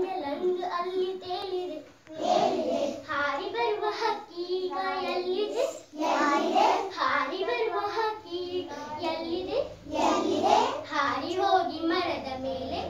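A young girl singing a school song unaccompanied, in phrases of about four seconds with short breaths between them.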